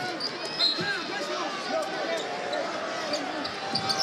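Basketball being dribbled on a hardwood arena court over steady crowd noise during live play.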